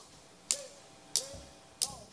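A drummer's count-in: three sharp drumstick clicks, evenly spaced about two-thirds of a second apart, setting the tempo before the band starts a song.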